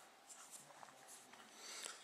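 Near silence: quiet room tone with a few faint small ticks.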